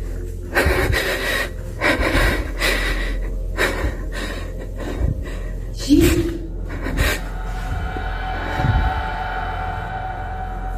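A person breathing hard in irregular gasps, with rustling from the handheld phone, the loudest gasp about six seconds in. Steady droning tones come in for the last few seconds.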